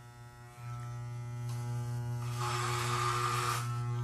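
Corded Wahl electric hair clipper with a number 8 guard, buzzing steadily in a low hum. From a little past the middle, for about a second, there is a rasping as it cuts through about an inch of hair.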